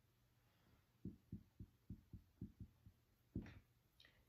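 Faint dry-erase marker strokes knocking against a whiteboard while writing: a run of about eight soft, low knocks, roughly four a second, then one brief sound near the end.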